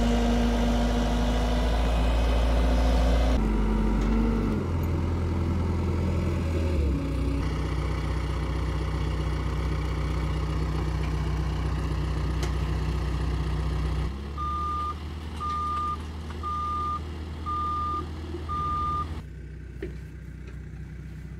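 Caterpillar 277B compact track loader's diesel engine running, its note changing several times. Near the end its reverse alarm beeps five times, about once a second.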